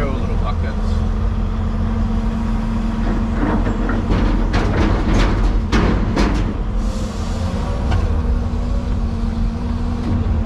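Excavator diesel engine running steadily, heard from inside the cab, with chunks of concrete clattering and knocking into a steel truck body as a bucketload is tipped, a burst of heavy knocks from about three and a half to six and a half seconds in.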